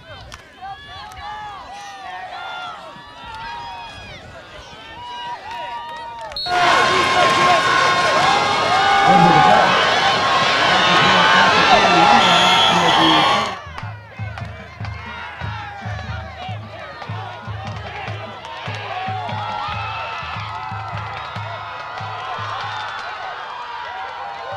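Football crowd in the stands, many voices talking and shouting. In the middle comes a much louder stretch of cheering and yelling that cuts off suddenly.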